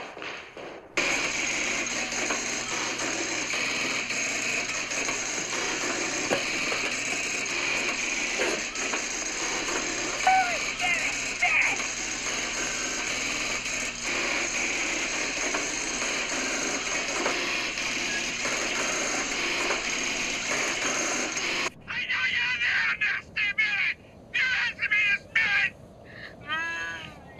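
Electromechanical switching gear in a telephone exchange working: a dense, steady clatter of many clicking selectors and relays. It cuts off abruptly about 22 seconds in, and a few irregular short sounds follow.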